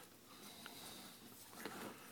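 Faint handling of a plastic wiring-harness connector as its tabs are squeezed and its insert is pushed out of the metal casing: a few light clicks and rubbing, a little louder about one and a half seconds in, otherwise near silence.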